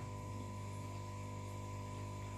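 A steady low electrical hum and buzz, with a faint thin high tone above it.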